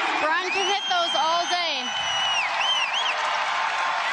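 Basketball arena crowd cheering, with a long high-pitched whoop that rises, holds for about two seconds and ends in a couple of wavering yelps.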